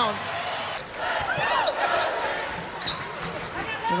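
Basketball arena game sound: a steady crowd murmur with short high squeaks, typical of sneakers on a hardwood court, and a basketball bouncing on the floor.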